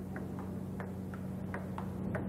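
Table tennis ball in a rally: light, sharp clicks of the ball on the table and paddles, about three a second, over a steady low hum.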